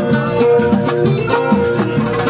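Loud live Moroccan beldi music with a steady, repeating beat.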